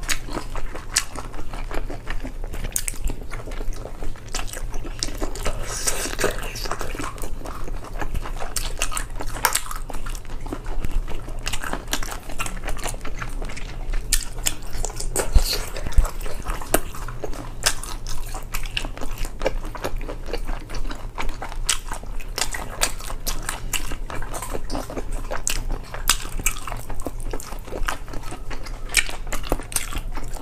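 Close-miked biting and chewing of chewy spicy sea snail meat, with many short clicks and smacks throughout.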